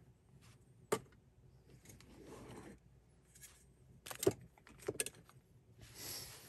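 Quiet handling of spinning-wheel bobbins being lifted out of a foam-lined case and set down: a few light clicks and knocks, one about a second in and a cluster around four to five seconds in, with a soft rustle in between.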